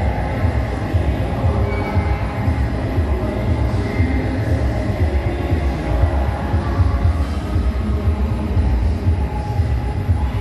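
R.G. Mitchell Jerry the Giraffe kiddie ride running: a steady low rumble from its motor and rocking mechanism, with faint music from the ride's speaker.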